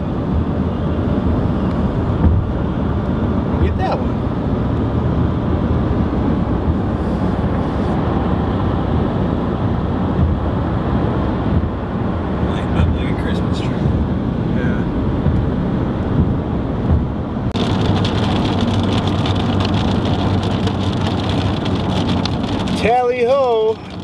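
Steady road noise of a car being driven, heard from inside the cabin. About seventeen seconds in, a brighter hiss joins it and runs on.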